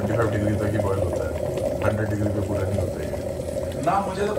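Water boiling in an open stainless-steel electric kettle, a steady boil.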